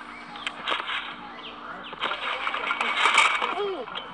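Soundtrack of a trampoline-fails video clip playing: people's voices and commotion, louder from about two seconds in, with a voice crying out on a falling pitch near the end.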